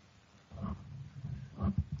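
A low, growly voice sound, a few rough pulses starting about half a second in.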